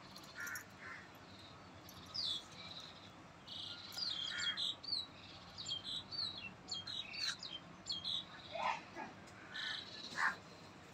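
Birds chirping: quick runs of short, high chirps, some sliding up or down in pitch, getting busier from about two seconds in, with a lower call near the end.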